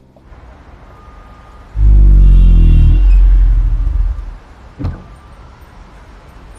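A car engine starting up with a loud rev about two seconds in, then settling and dying away within about two seconds; a single short knock follows near the end.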